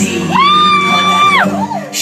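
Pop song playing over a venue sound system, with a single long, high whoop from the audience: it rises, holds steady for about a second and falls away.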